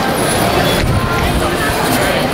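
Busy city street ambience: many people talking at once, mixed with the steady noise of passing traffic.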